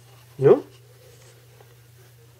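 A single short spoken word, a questioning "No?", about half a second in, over a faint steady low hum.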